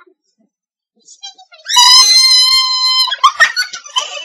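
A young woman's loud, high-pitched scream, held at one steady pitch for about a second and a half starting just before the middle, followed by shorter broken vocal outbursts near the end.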